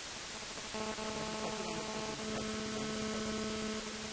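Steady hiss of recording noise, joined about a second in by a steady electrical hum: one low tone with a ladder of overtones that holds flat and stops just before the end.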